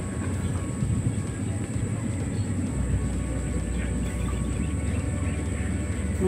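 Steady low rumble of distant harvesting machines working a rice field, mixed with wind buffeting the microphone.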